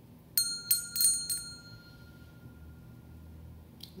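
Small brass hand bell rung by its handle: four quick strikes within about a second, then one clear tone rings on for a few seconds before dying away.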